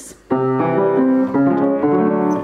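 A 19th-century Érard piano played: a short succession of chords and notes beginning about a third of a second in, each ringing on as the next enters. The instrument is a bit out of tune.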